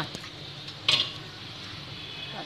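Salted water boiling in a wok, a steady bubbling hiss, with one sharp clink of kitchenware about a second in.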